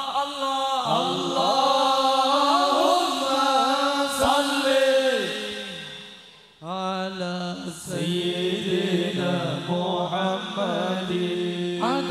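Male vocalists chanting a sholawat, an Islamic devotional song praising the Prophet, in long ornamented melodic phrases. The singing breaks off about six seconds in, then a new phrase starts.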